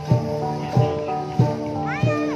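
A Central Highlands cồng chiêng ensemble of hand-held gongs struck with padded beaters in a steady repeating beat, about three strokes in two seconds. Each stroke leaves several pitches ringing and overlapping into the next.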